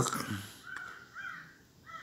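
A few faint, short bird calls in the background, like the caws heard through the surrounding speech.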